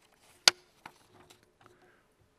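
One sharp click about half a second in, then a few faint ticks, picked up by the lectern microphones during a pause in the speech. They come from handling at a wooden lectern.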